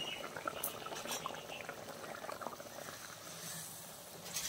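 Thick fish-head curry boiling in a cast-iron kadai: steady bubbling with many small, irregular pops and crackles, easing off a little toward the end.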